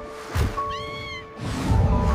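Soft background music with long held notes. About a second in there is a short, high, arching creature cry, a sound effect for the plesiosaur. A splash comes just before the cry, and a rush of splashing water follows it as the animal breaches.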